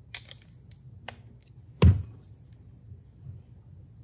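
Small clicks and taps of a screwdriver working a hair clipper's blade screw while the blade is nudged into place, with one sharp knock, the loudest sound, a little under two seconds in.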